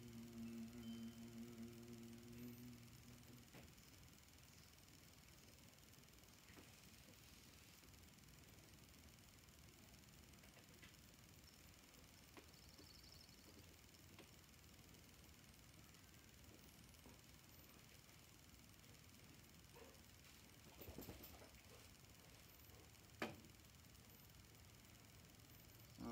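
Near silence: room tone, with a low steady hum for the first three seconds or so and a single sharp click about three seconds before the end.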